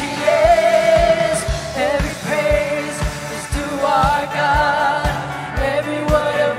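A live worship song: women singing the melody with vibrato over a band, with a kick drum on a steady beat about twice a second.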